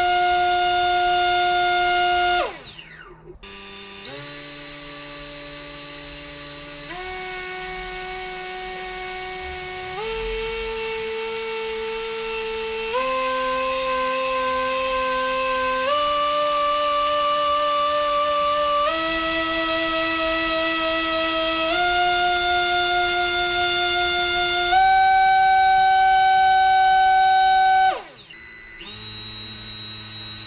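Small 2800KV brushless drone motor spinning a Gemfan 4024 propeller on a thrust stand, with a high-pitched whine. The whine drops away about two and a half seconds in, then climbs in about eight even steps, one every three seconds or so, as the throttle is raised in stages. Near the end it falls away sharply as the run ends.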